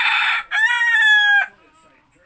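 A rooster crowing loudly: the rough end of its opening phrase, then one long drawn-out note that drops slightly and cuts off about a second and a half in.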